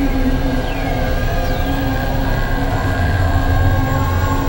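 Experimental synthesizer drone music from a Novation Supernova II and Korg microKorg XL: a dense low drone under several steady held tones, with a couple of high falling pitch sweeps in the first half and the low drone swelling near the end.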